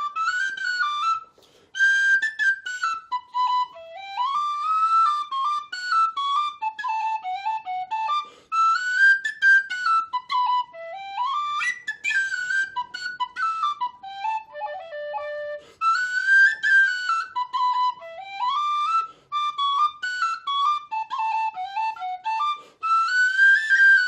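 Solo tin whistle playing a traditional Irish schottische melody, a single line of quick notes with short breath breaks between phrases every seven seconds or so.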